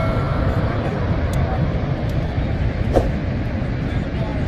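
Steady low roar of Niagara Falls' falling water, with faint voices of people around, and one short click about three seconds in.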